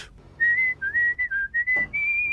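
A person whistling a short tune of about five quick notes that step up and down in pitch, starting about half a second in and moving to a higher held note near the end.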